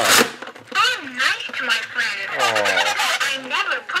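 A 1994 Mattel Safe 'N Sound See 'N Say talking toy: a short rasp as its side lever is pulled, then the toy's recorded voice message plays back garbled, its pitch swooping up and down, a sign that the toy's playback mechanism is off.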